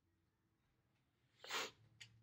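Near silence, broken about one and a half seconds in by a single short, breathy burst from a person, about a quarter second long.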